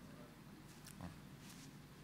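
Near silence: room tone with a faint low hum and one faint brief sound about a second in.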